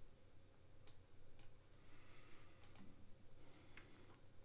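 A few faint, sharp clicks at irregular intervals over near silence, including a quick pair about two-thirds of the way in: a computer's mouse and keys being worked.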